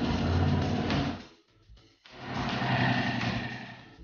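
Motorcycle engine revved twice, each rev swelling up and dying away.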